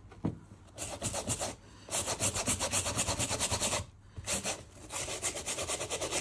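A dry clean eraser rubbed rapidly back and forth over a sneaker's suede, several strokes a second, in three spells with short breaks, to lift marks.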